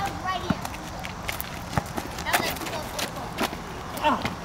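A basketball bouncing on an asphalt court, a few sharp, irregularly spaced bounces, with players' voices in the background.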